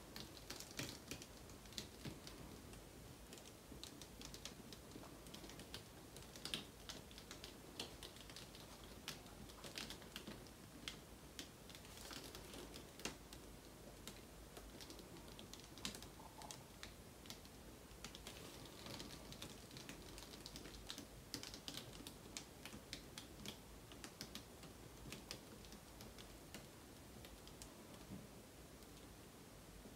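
Faint, irregular light clicks and taps from a stretched canvas being handled and tilted in gloved hands.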